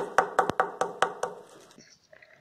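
A quick run of light, hard knocks, about five a second, as gloved hands handle hardened grain-and-honey balls on a tray. The knocks fade and cut off suddenly near the end.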